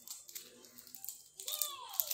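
Faint crinkling and small clicks of a foil cookie wrapper being handled, with a short gliding voice sound near the end.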